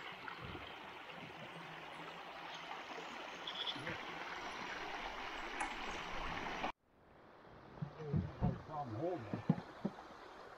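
Water rushing over a beaver dam, a steady rush that cuts off abruptly about two-thirds of the way through. Quieter flowing water follows, with a few short faint voice sounds near the end.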